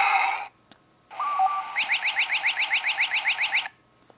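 Electronic spaceship sound effects from the toy Transformers Millennium Falcon's built-in speaker, set off by holding its button down. A pulsing beeping stops about half a second in. After a short pause comes a longer effect: a brief steady tone, then rapid repeated pitch sweeps at about six a second, which cut off abruptly near the end.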